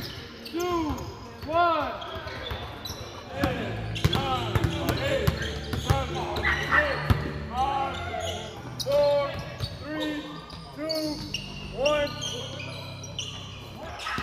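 Basketball shoes squeaking on a hardwood gym floor in many short chirps that rise and fall in pitch, with a basketball bouncing in sharp knocks, in a large echoing gym.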